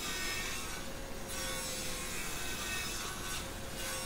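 Sliding compound miter saw cutting a 45-degree miter through a hardwood bar rail, running steadily and fairly quietly as the blade is drawn through the wood.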